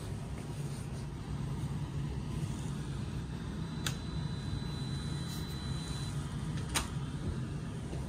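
A card key tapped on a locker's electronic card lock over a steady low hum: a click about four seconds in, a faint high tone held for about two seconds, then a sharper, louder click near seven seconds as the lock releases and the locker door opens.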